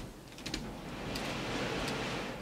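Hands smoothing gel through a section of wet, gel-coated hair: a rustling, brushing sound that swells about a second in, with a couple of faint clicks.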